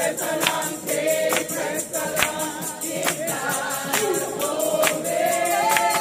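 Gospel singing by a group of voices, with a tambourine marking a steady beat: a sharp jingling hit a little under once a second.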